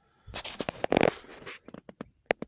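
Fabric rustling and crackling close to the microphone, with a dense burst of crackles about a second in and a few separate sharp clicks near the end.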